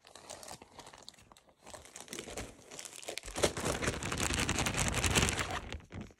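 Plastic zip-top bag crinkling and rustling as it is handled. The sound is scattered at first and grows loud and continuous about three seconds in.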